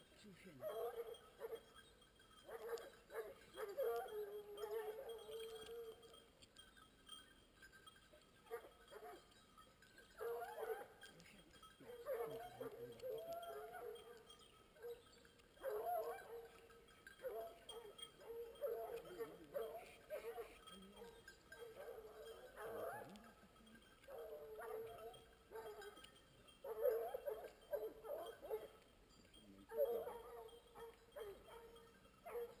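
Hunting dogs baying during boar work, repeated pitched calls in bouts of a second or two that keep coming throughout.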